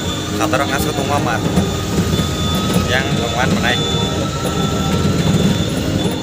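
An auto-rickshaw ride heard from inside the passenger cabin: a steady low engine rumble and road noise, with a voice talking briefly twice over it.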